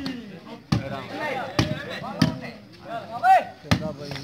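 A volleyball struck sharply four times during a rally, with crowd and player voices calling out in between.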